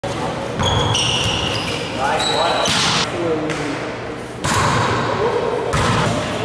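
Indoor volleyball rally in a reverberant gym: sneakers squeaking in short, high chirps on the court, the ball struck with sharp hits about three times, and players calling out.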